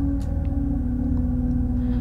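Dark ambient drone from a film score: a deep, steady rumble under a single held tone that dips slightly in pitch about half a second in.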